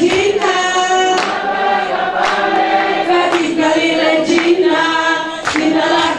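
Congregation singing a worship song together, with hand claps about once a second.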